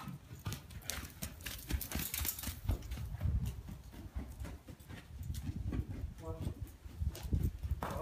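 A horse's hooves thudding on deep arena sand as it canters, in an uneven run of dull low beats. A short pitched sound comes a little after six seconds.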